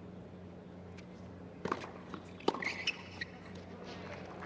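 Quiet tennis-court ambience with a steady low hum, broken by a couple of sharp knocks about a second and a half and two and a half seconds in, typical of a tennis ball being bounced before the serve, and a few faint short sounds from the stands.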